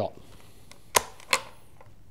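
Two sharp metallic clicks about a third of a second apart from the three-lug bolt action of a Sportco (Omark) Model 44 target rifle, as the rifle is dry-fired and the bolt worked open.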